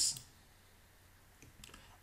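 A few faint computer mouse clicks about one and a half seconds in, after a stretch of near-silent room tone.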